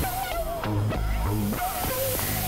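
Experimental synthesizer music: a wavering lead tone over separate low bass notes, with sharp clicks spread through it.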